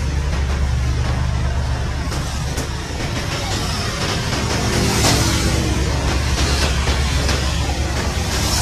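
Several military utility helicopters running on the ground with rotors turning: a loud, steady turbine-and-rotor drone with rapid blade chop, growing slightly louder about halfway through.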